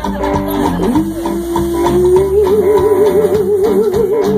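Live band playing with electric bass, electric guitar and drums, while a woman sings one long held note that swoops up about a second in and takes on a wide vibrato in the second half.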